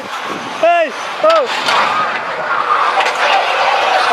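A man gives two short exclamations while riding a spinning ride. They are followed by a loud, steady rushing noise of air and motion over the microphone as the ride turns.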